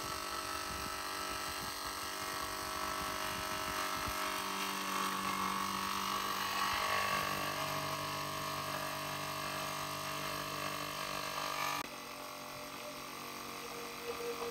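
Small 12 V DC motor-driven compressor and cooling fan running with a steady electric hum. The pitch steps lower about halfway through and the sound changes again near the end.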